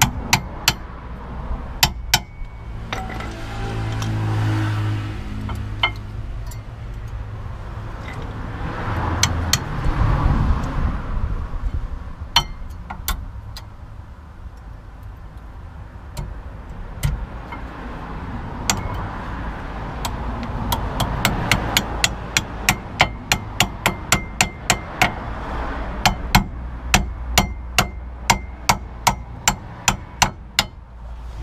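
Sharp metal taps and clicks as new rear brake pads are worked into a VW Golf MK4's caliper carrier, scattered at first and then a steady run of taps, about two to three a second, through the last third.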